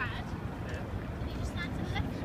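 Street ambience: faint voices of people talking, at the start and again near the end, over a steady low rumble.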